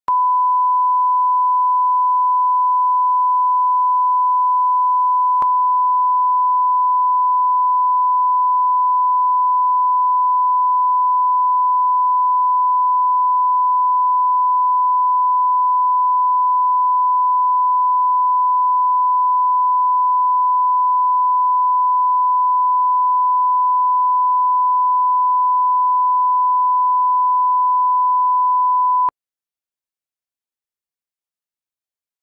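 Bars-and-tone line-up signal: a steady 1 kHz reference sine tone, the level reference that goes with broadcast colour bars. It holds at one pitch, with a faint click about five seconds in, and cuts off suddenly about a second before the end.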